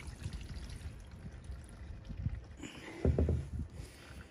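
Diesel fuel trickling and dripping faintly from a just-removed Duramax fuel filter into a drain pan, with a short, louder low knock of handling about three seconds in.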